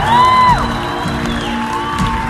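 Live band music in a large hall: sustained chords underneath, with a high held note that falls away about half a second in and another long note starting near the end.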